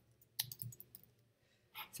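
Faint computer keyboard typing: one sharp key click about half a second in, followed by a few softer clicks.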